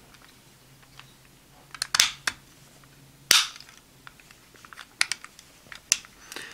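Hard plastic parts of a toy figure clicking and knocking as it is handled and its folding parts are moved: a cluster of clicks about two seconds in, a sharp snap a little after three seconds, and a few lighter clicks near the end.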